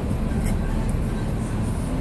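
Steady low rumble of street traffic in the background, with a faint click about half a second in.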